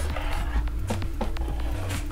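Background music: a single held note over a steady low bass, with a few faint clicks.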